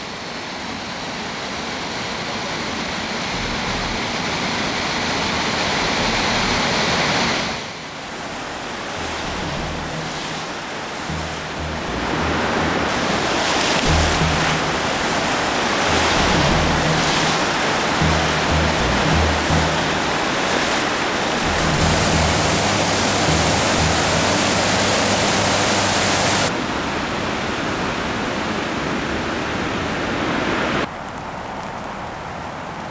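Floodwater roaring through the spillway gates of the Orlík dam, a loud steady rushing noise that jumps abruptly in level a few times.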